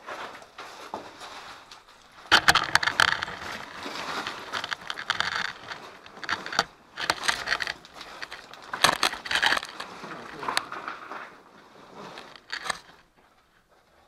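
A camera tripod grinding and scraping on sand and loose rock, in irregular crunching bursts with a few sharp knocks. Quieter for the first two seconds, it dies away near the end.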